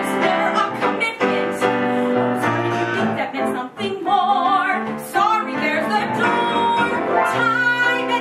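A woman singing a musical-theatre song with piano accompaniment, her held notes wavering with vibrato.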